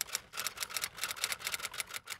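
Typewriter keystroke sound effect: a rapid, even run of sharp clicks, about eight a second, as letters are typed on.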